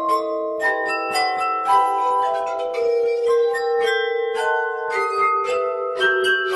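Music played on tuned glasses: a melody of ringing, overlapping glass notes, each starting with a sharp attack, about two notes a second.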